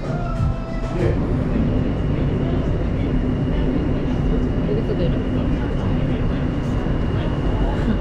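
New York City subway car in motion, heard from inside: a steady low rumble with a steady high whine that sets in about two seconds in. Background music cuts off about a second in.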